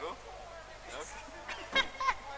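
Faint, indistinct voices murmuring, with two brief, loud, high-pitched sounds near the end that have a clear pitch, like a squeal or honk.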